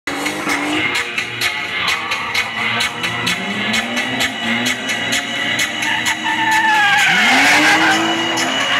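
Drift car's BMW E36 M3 straight-six revving up in short pulls, under music with a steady fast beat. In the last second or so the engine climbs hard and the tyres squeal as the car slides into a drift.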